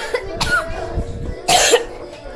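A person coughing twice, about a second and a half apart, over faint background music.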